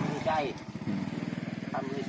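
A small motorcycle engine running steadily, with the tail of a man's speech at the start.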